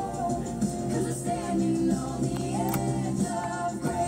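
A recorded song playing, with a voice singing held, gliding notes over the backing music.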